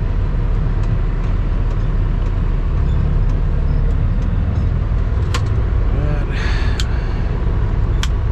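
Cummins ISX diesel engine of a Kenworth W900L rumbling steadily, heard from inside the cab as the truck pulls away from a stop. A couple of sharp clicks and a short burst of faint voice and hiss come about six to seven seconds in.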